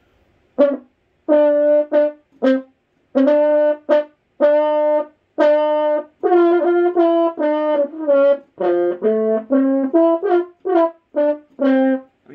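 Double French horn played solo: a syncopated phrase of short, separated notes mixed with longer held ones, starting about half a second in.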